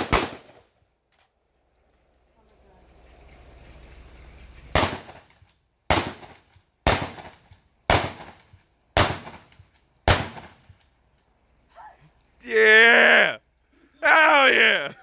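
Rifle fire: the last shots of a quick string right at the start, then six single shots about a second apart. Near the end a man gives a loud yell lasting about a second.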